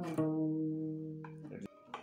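Acoustic guitar: a highlife lick ends on one plucked note just after the start, left ringing and fading away over about a second and a half, followed by a couple of faint clicks near the end.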